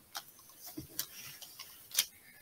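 Light, irregular clicks and taps, a few a second, the sharpest one near the end.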